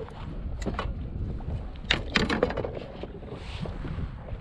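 Wind rumbling on the microphone, with a few sharp clicks and knocks from gear being handled in a plastic fishing kayak, the loudest about two seconds in.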